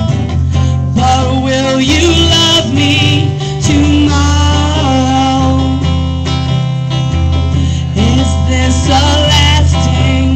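A woman singing while playing an electric guitar, live, with chords ringing under the voice.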